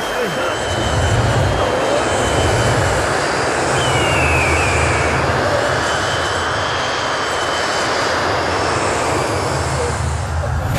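Steady loud rushing roar with a pulsing low rumble beneath it, a sound-design effect on a film's fight-scene soundtrack, with the music dropped out.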